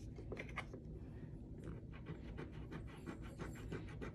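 A coin scratching the coating off a scratch-off savings-challenge card, a run of short, dry scrapes.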